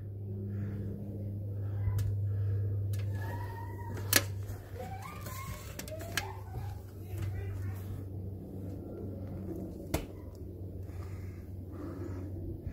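Indistinct voices in the background over a steady low hum, with two sharp knocks, about four seconds in and near the tenth second.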